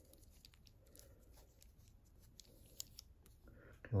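Faint handling sounds of a dart re-pointer tool: small clicks and light scrapes of fingers and metal parts as a spigot is lined up in the tool's clamp, with one sharper click about three seconds in.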